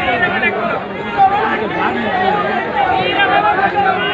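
Crowd of many people talking and calling out over one another, a continuous babble of voices.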